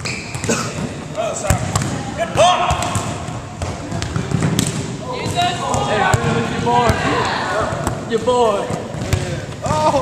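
Volleyballs being struck and bouncing on a hardwood gym floor, a scatter of sharp thuds from several drills at once, under the overlapping voices and calls of many players in a large gym.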